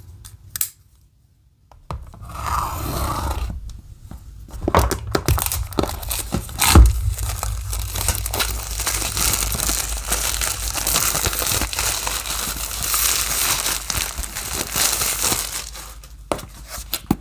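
A folding knife slitting the plastic shrink-wrap on a cardboard product box, then the wrap being torn and crinkled off the box for several seconds. One loud knock falls about seven seconds in.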